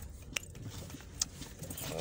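Car interior noise while driving: a steady low engine and road rumble, with a few sharp light clicks and rattles over it.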